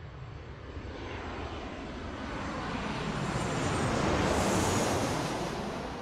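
Jet aircraft passing overhead: a steady rushing noise swells to a peak about four to five seconds in, with a high whine that drops in pitch as it goes by, then fades away.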